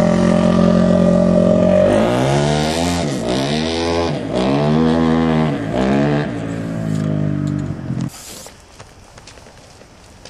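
A motor vehicle's engine running, first at a steady pitch, then revving up and down several times before it cuts off about eight seconds in.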